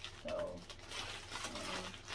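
Clear plastic packaging crinkling and rustling as two plastic rabbit cage mats, still in their bags, are handled and shifted.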